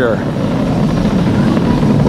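Falcon 9 first-stage rocket engines (nine Merlin 1D) during ascent: a loud, steady, deep rumble heard from the ground.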